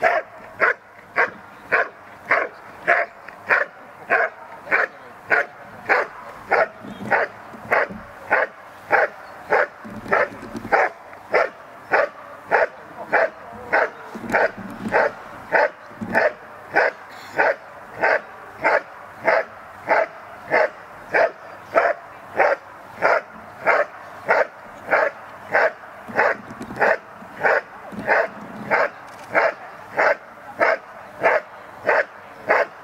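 Belgian Malinois barking steadily at a helper in a blind: the hold-and-bark of IPO protection work, where the dog keeps the cornered helper in place by barking. The sharp barks come evenly, a little under two a second, without a break.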